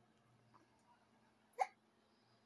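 A baby hiccups once, a short sharp sound about one and a half seconds in.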